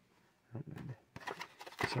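Plastic blister pack of trading cards being handled and opened by hand: scattered faint clicks and crackles of the plastic in the second half, after a short low sound about half a second in.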